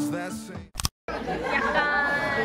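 A sung song fades out, there is a short break of silence just under a second in, and then many people chatter in a busy restaurant room.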